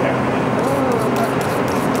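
A steady machine drone with a low, even hum, with a faint voice heard briefly about half a second in.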